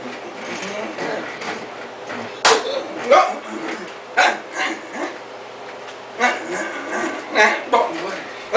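A man's voice making short, wordless vocal bursts, about eight loud yelps and exclamations in quick succession, over a steady low hum.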